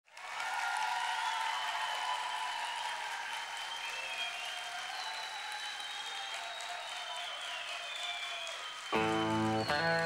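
A large audience applauding and cheering, with high shouts rising above the clapping. About nine seconds in, the song's music starts abruptly and louder, with a steady rhythm of pitched chords.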